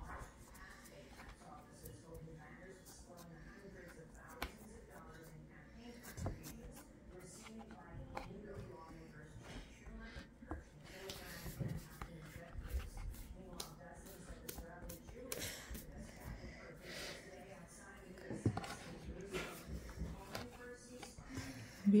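Soft, scattered taps and rubbing of hands pressing cookie dough flat on a floured wooden board, under faint voices.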